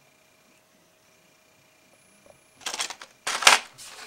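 Near silence, then, about two and a half seconds in, a short run of crackling and tapping as plastic blister-packed fishing lures on cardboard cards are handled.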